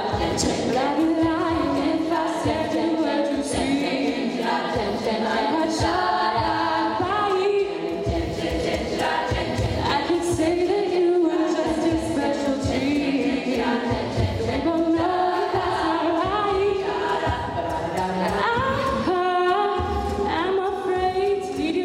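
All-female a cappella group singing: a female lead voice on a microphone over several backing voices, with no instruments.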